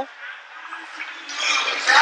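Ice-rink ambience: a quiet, even noise that swells in the second half.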